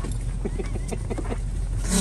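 Steady low hum of the parked van's idling engine, with faint irregular scuffs and snuffles from an excited English bulldog moving about on the seat.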